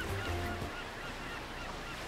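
Faint background of short, repeated bird calls, small chirps over a low hum.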